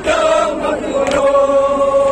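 A group of men chanting a Kashmiri noha (mourning lament), holding one long note from about a second in. Sharp slaps of chest-beating (matam) cut in about once a second.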